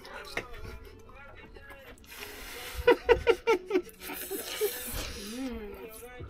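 People slurping spaghetti, with a quick run of laughter about three seconds in and a hummed rise and fall near the end.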